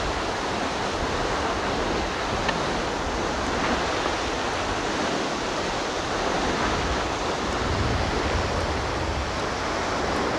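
Crystal Geyser, a cold-water geyser driven by carbon dioxide, erupting: a loud, steady rush of water jetting up and spraying back down.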